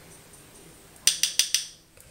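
About four quick, sharp clicks in close succession a little after a second in, from small hard objects being handled, over faint room tone.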